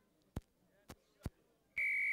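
Rugby referee's whistle: a single short, steady blast near the end, signalling a penalty. A few faint clicks come before it.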